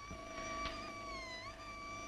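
Soft film background score: a high note held steadily, dipping briefly in pitch and coming back about one and a half seconds in, over a lower sustained note.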